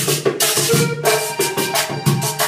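Vallenato played live in an instrumental passage: a button accordion carries the melody over a metal guacharaca scraping a steady rhythm of about four strokes a second, with a caja drum.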